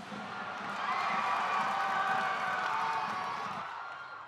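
A crowd cheering, swelling about a second in and easing off toward the end.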